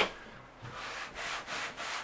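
Green Scotch-Brite scuff pad rubbed in quick strokes, about three a second, over the plastic of an ammo box, scuffing off the factory coating so paint will stick.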